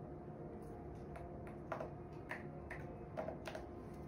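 A string of about seven quick, irregular key or button clicks, like typing on an ultrasound machine's console, over a steady low machine hum.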